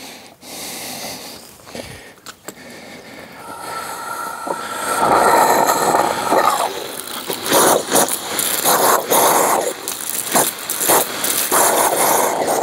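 Garden hose spray nozzle hissing as the water is turned on and air is pushed out ahead of it. The hiss builds about three and a half seconds in, with a brief whistle. It then turns to irregular sputtering and spitting as the water reaches the nozzle.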